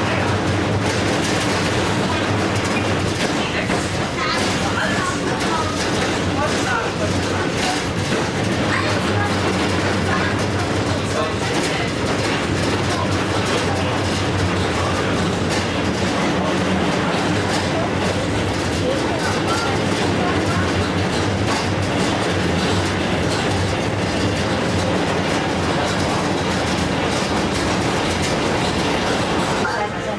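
Tram running along its track, heard from inside the car: a steady motor and rolling hum with the clickety-clack of wheels over rail joints.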